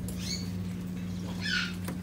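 Green-winged macaw giving two short, high squeaks, each falling in pitch, one just after the start and one about a second and a half in, over a steady low room hum.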